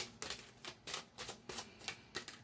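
A deck of cards being shuffled by hand: a quick, irregular run of light card clicks and snaps.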